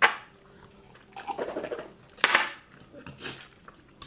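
A person's breathy huffs and sharp exhales, with a strong one about two seconds in and a weaker one near the end, over faint mouth sounds of eating.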